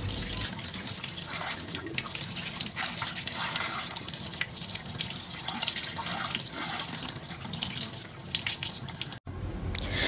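Cold water running from a kitchen tap and splashing onto blanched broccoli in a plastic colander, a steady rush that cuts off abruptly near the end.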